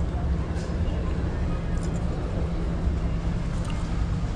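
Steady low rumble of city street traffic, with no distinct events standing out.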